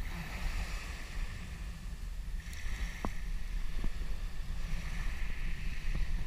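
Wind buffeting the microphone over small waves lapping at the shoreline, with a couple of faint clicks around the middle.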